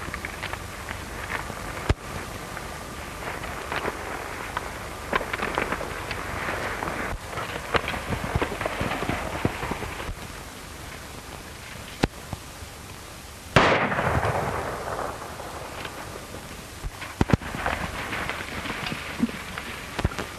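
Gunshots on an old film soundtrack: several sharp shots scattered through, the loudest about two-thirds of the way in with a long fading echo, over a steady hiss.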